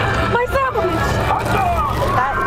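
Passengers' voices talking and calling out over one another inside a moving charter bus, above the bus's steady low drone of engine and road noise.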